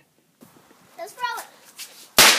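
Brief speech, a single word, over a faint steady hiss that begins suddenly about half a second in after near silence.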